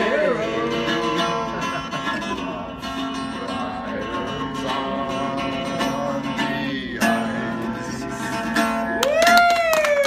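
Live acoustic guitar accompaniment to a country-style song, with a voice singing over it. Near the end a single voice rises into a long held call that slowly falls away.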